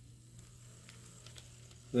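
Faint running sound of an Atlas model Southern Pacific SD7 locomotive moving slowly along the track: a low steady hum with a light hiss and a few soft clicks, quiet enough to fit its being a quiet runner. A man's voice starts at the very end.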